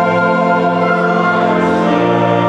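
Men's choir singing a hymn in held chords with organ accompaniment, moving to a new chord near the end.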